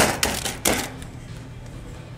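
Clif Bar wrappers crinkling and crackling as a handful of the bars is handled, in quick sharp bursts over about the first second, then dying away.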